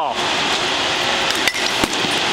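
Baseball knocking off a bat held out for a bunt: a couple of short, sharp knocks near the end, over a steady background hiss.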